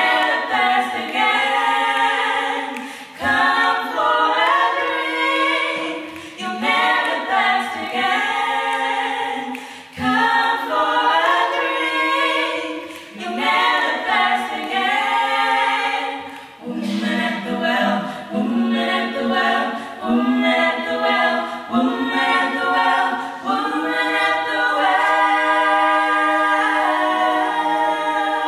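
Female vocal trio singing a gospel song a cappella in harmony into microphones, with no instruments. The singing comes in phrases a few seconds long with brief breaths between them.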